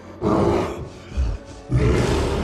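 A giant gorilla's roar, a film creature sound effect, over orchestral score. The roar comes loud just after the start, a short deep hit follows about a second in, and a second loud burst begins near the end.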